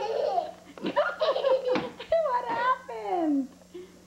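A young child laughing and vocalizing in a high voice without clear words, ending in a long falling glide about three seconds in.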